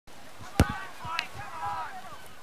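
A small ball bouncing: two sharp knocks about half a second apart, with softer thuds around them. High, chirping tones come in after the second knock.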